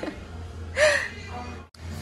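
A person's short, breathy vocal sound about a second in, over steady background music, with a brief dropout near the end.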